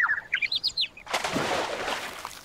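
Cartoon 'seeing stars' sound effect: a run of quick, high bird tweets, rising and falling, for a stunned character. About a second in it gives way to a noisy rush lasting about a second.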